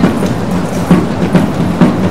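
Parade music: a steady drum beat of about two strokes a second over a sustained low note.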